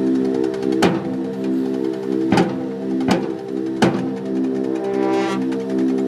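Marching band playing a sustained wind chord, punctuated by four loud percussion hits that ring on: one about a second in, then three more less than a second apart around the middle.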